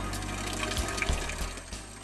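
Soft background music under a steady rushing noise, dipping just before the end.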